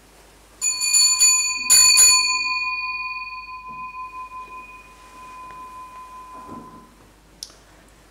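Altar bell rung at the elevation of the consecrated host: two quick bursts of strikes about a second apart, then one clear tone ringing on and fading away over about five seconds.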